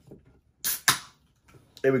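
A ring-pull aluminium drinks can of carbonated cherry soda being cracked open: two sharp snaps close together, a little over half a second in.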